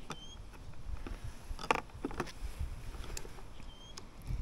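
Hands handling plastic XT60 battery connectors and wiring on a cordless mower's battery box: a few faint clicks and rustles scattered through, over a low rumble.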